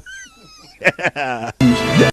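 A brief, faint, wavering high-pitched call at the start, then speech, then a loud burst of music near the end.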